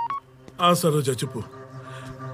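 The last beep of a run of phone keypad tones, then about half a second in a man's short loud vocal outburst, a laugh, falling in pitch, over a low sustained music drone.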